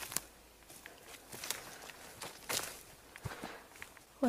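Footsteps through woodland leaf litter and twigs, with irregular crunches and crackles. The louder steps come at about a second and a half and two and a half seconds in.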